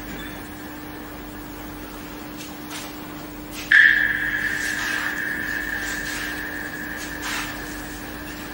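A single high ringing tone strikes suddenly about four seconds in and slowly fades, over a steady low hum.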